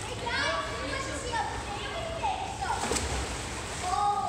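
Children's high-pitched shouts and calls while they play at a swimming pool, with a short sharp knock nearly three seconds in.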